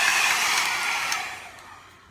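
Mini hair dryer running on low with a steady airy rush and a faint high whine, run briefly to blow dust out of it. It is switched off about a second and a half in and winds down.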